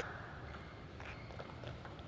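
Table tennis ball being hit back and forth in a fast rally, a run of faint, quick clicks off the bats and the table.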